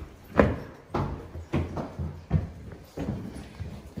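Footsteps on a hard floor: a run of separate thuds, about one every two-thirds of a second.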